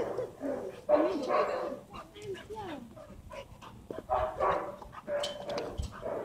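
Dogs vocalizing during rough play: a string of short yips and whines that bend up and down in pitch.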